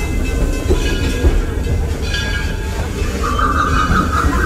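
Passenger train rolling along, a heavy low rumble with uneven rattle from the cars as heard from on board, and a steady high tone joining in near the end.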